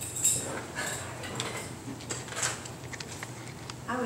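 Scattered light knocks, clicks and rustles of objects being handled at a wooden lectern with a microphone on it.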